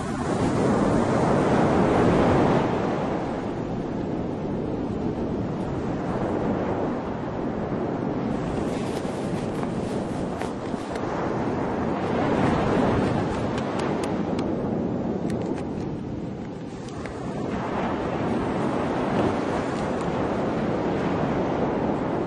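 Ocean surf washing onto a sandy beach, a steady rush of noise that swells and eases several times.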